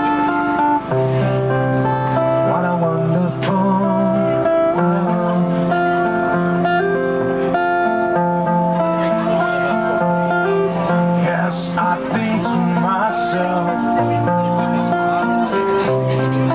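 Electro-acoustic guitar played solo through the stage PA: a picked melody ringing over held bass notes that change every second or two.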